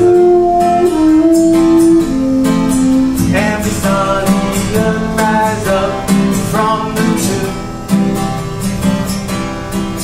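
Acoustic guitar strummed in a steady rhythm. It opens under about three seconds of long held melody notes that step down in pitch.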